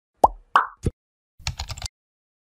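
Animation sound effects: three quick pops, then about a second and a half in a short rapid rattle of clicks like keyboard typing as text fills a search bar.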